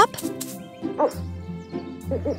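Cartoon background music playing steadily. About a second in, the owl character gives a short, high vocal call.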